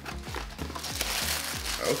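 Paper crinkling as a pair of sneakers is lifted out of its shoebox, growing louder about a second in.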